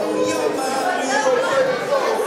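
Crowd chatter: several people talking at once in a large hall, with no one voice standing out.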